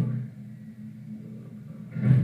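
A low, steady drone of several held tones, background music under the interview audio, with the tail of a man's word at the very start and a loud new sound beginning at the end.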